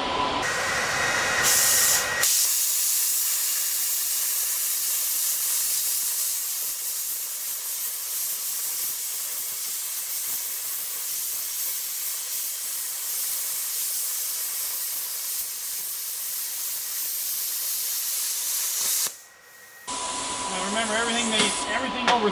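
Thermal Dynamics Cutmaster 60i X plasma cutter cutting through 1-inch steel plate: the arc and its air jet make a loud, steady hiss that starts about two seconds in, runs for about seventeen seconds and cuts off sharply near the end. This is a severance cut, beyond the machine's rated 3/4-inch capacity.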